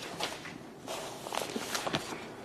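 Sheets of paper being handled and pages turned close to a clip-on microphone: a string of short, irregular rustles and taps.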